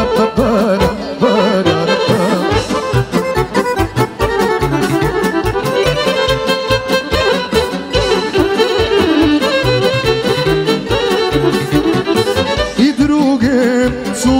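Live band playing fast Balkan folk dance music, with a steady drum beat under a wavering, ornamented melodic lead.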